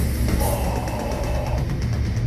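Old-school death metal band playing live: heavily distorted electric guitars over a drum kit played fast, with rapid drum hits throughout.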